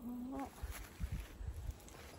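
A woman's voice drawing out a short spoken phrase at the start, then several low dull thuds.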